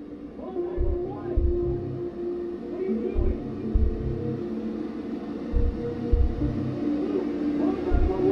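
Dark film score: low drawn-out drone tones with wavering, sliding wails over them, and a deep pulse of low thumps in short clusters that comes back about every two and a half seconds, like a heartbeat.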